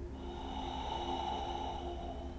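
A long, deep audible breath from a man holding a yoga pose, lasting about two seconds, with a thin high whistle in it. Soft background music plays underneath.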